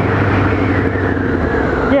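Motorcycle engine running steadily as the bike is ridden along a road, with wind noise over the helmet-camera microphone; the engine pitch eases down slightly in the second half.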